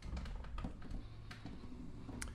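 Faint handling noise from a hollow-body archtop guitar being shifted and repositioned: a few light clicks and knocks over a low rumble.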